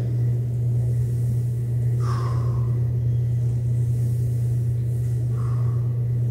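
A steady low hum, with two brief faint hissing sounds, one about two seconds in and one near the end.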